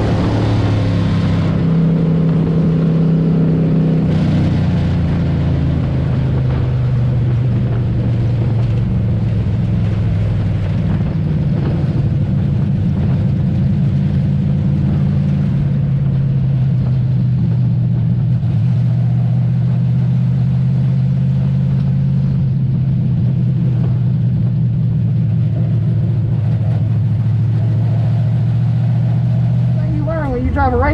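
Dirt-track crate race car's V8 engine running, heard from inside the cockpit. Its revs change during the first few seconds, drop about four seconds in, and then hold fairly steady.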